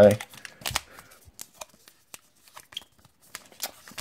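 Baseball cards and foil card-pack wrappers handled on a table: a string of light, irregular clicks and rustles as cards are set down and the next pack is picked up.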